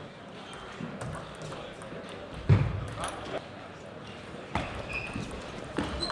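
Table tennis ball being hit back and forth in a rally: a string of sharp, irregularly spaced clicks of the ball on the rubber bats and the table, the loudest about two and a half seconds in, in a large hall.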